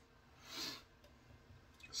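A brief soft hiss from a just-opened can of stout about half a second in, then near quiet.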